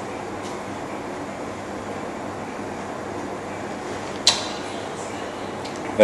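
Steady background noise, like an air conditioner running, with one sharp click a little over four seconds in.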